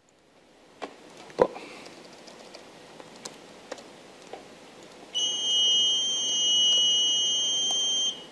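Buzzers on IoT boards sounding together in one steady, high-pitched electronic beep of about three seconds, starting about five seconds in: the boards have received a remote MQTT command to make noise. A few faint clicks come before it.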